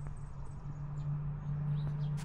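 Steady low mechanical hum at one pitch, with a few faint, short, high chirps over it.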